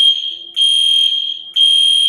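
High-pitched electronic alarm beeping: steady, single-tone beeps about a second long, separated by brief gaps.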